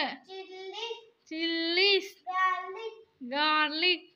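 A young girl's voice reciting words in a singsong chant: four drawn-out phrases with short gaps between them.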